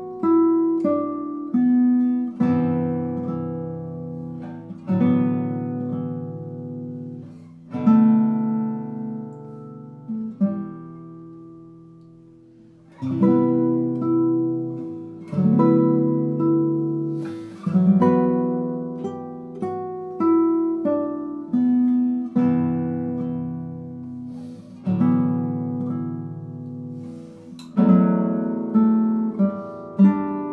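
Two nylon-string classical guitars playing a duet: plucked melody over chords, each note struck and left to ring and decay. Near the middle a phrase dies away almost to quiet before the next one begins.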